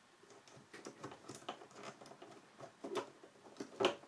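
Faint scattered clicks and rubbing of rubber loom bands being pushed down on the pegs of a plastic peg loom by fingers, with a sharper click near the end.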